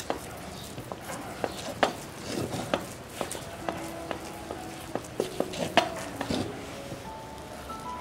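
Wooden spatula stirring a thick, dough-like besan and milk mixture in a nonstick pan, with irregular soft knocks and scrapes against the pan.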